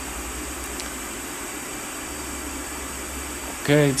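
Pink noise test signal summed with a copy of itself delayed by about 0.1 ms, as from two identical small full-range speakers slightly apart. It is a steady hiss comb-filtered, with narrow gaps cut out of it around 5 kHz and again near the top of the treble.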